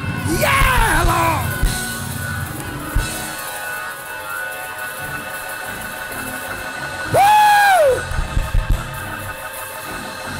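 Church music playing behind the sermon: held chords with drum hits. A voice cries out at the very start, then gives one long, loud held cry about seven seconds in.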